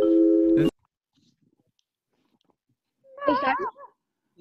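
A held chord of several steady tones, cut off sharply under a second in. Then silence, and near the end a short voice with a wobbling pitch.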